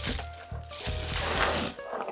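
Clear plastic bag crinkling and rustling twice as a string of LED bulbs is pulled out of it, over quiet background music.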